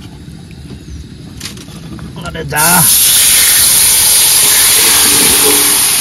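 Marinated chicken pieces dropped into hot oil in an iron wok, bursting into a loud, steady sizzle about two and a half seconds in.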